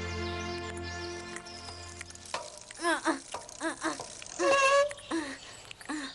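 Soundtrack music with held chords fades out over the first two seconds. Then a cartoon mouse character gives a string of short voiced grunts, followed by a longer, louder exclamation.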